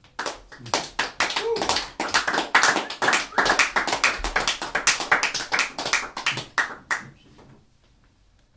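Tenor saxophone keys and pads slapped shut without a blown tone, a fast, uneven patter of pops and clicks that stops about a second before the end.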